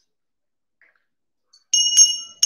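Near silence, then near the end a brass puja hand bell (ghanta) is rung, a couple of quick strikes with a bright, high ring that lingers, as the arati lamp offering begins.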